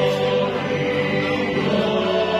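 Church choir singing a hymn in long, held notes, the voices moving to a new chord near the end.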